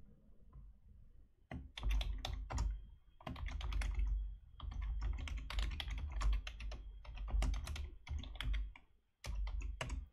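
Typing on a computer keyboard: rapid runs of keystrokes starting about a second and a half in, with a brief pause near the end before a last burst of keys.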